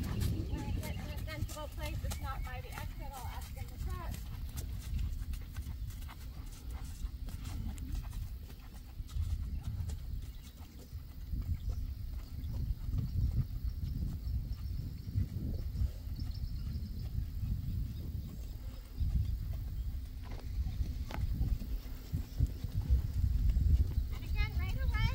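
Hoofbeats of a horse trotting on sand footing, over a steady low rumble.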